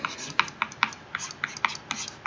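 Pen stylus tapping and scratching on a tablet screen while writing by hand: a quick, uneven run of light clicks, about four a second.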